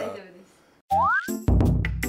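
Edited-in comedy sound effect: about a second in, a springy 'boing' with a rising pitch glide, then a loud low hit that starts a short musical sting.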